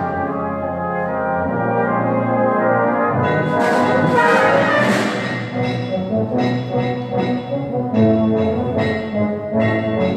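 Brass band of cornets, horns, trombones and tubas playing full, sustained chords, with a crash that rings away about four seconds in. From about six seconds in the band plays short, accented chords, roughly one a second.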